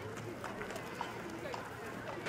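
A carriage horse's hooves clip-clopping at a walk on a hard surface, a sharp knock about every half second, over the low chatter of onlookers.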